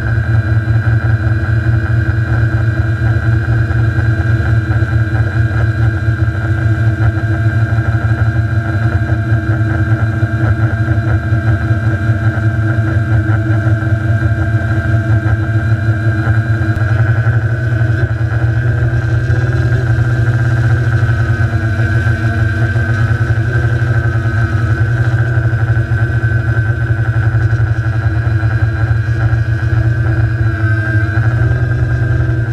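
Quadcopter's electric motors and propellers humming steadily as picked up by the camera on board, a loud low drone with a high whine over it. The whine's pitch wavers a little about two-thirds of the way through.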